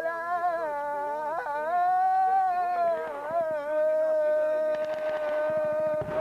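Singing: a voice holding long, high notes that waver slightly, the last note sustained and steady for a couple of seconds.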